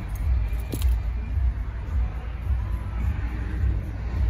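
Low, gusty rumble of wind on the microphone, with music faintly playing from the car radio.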